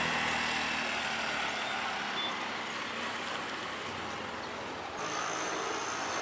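Steady road traffic on a wet road: passing vehicles and tyre hiss, easing a little in level. About five seconds in the sound changes, with a thin steady high tone added.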